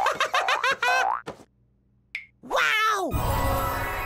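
Cartoon sound effects with music: a quick run of springy boings, a downward-sliding tone, then a loud crash that slowly dies away.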